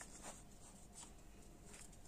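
Faint rustling of paper stickers being handled, with a few soft brushes of paper against paper.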